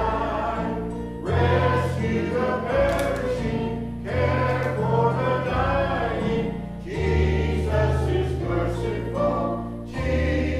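A mixed church choir of men and women singing a gospel hymn in phrases, over sustained low accompaniment notes that change every second or two.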